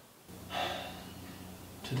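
A man takes a deep, audible breath about half a second in, which trails off over a second, over a low steady hum.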